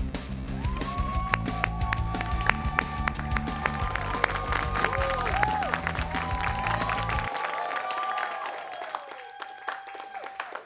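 Upbeat TV show theme music with a drum beat, bass and melody line. The bass and beat drop out about seven seconds in, leaving a lighter tail.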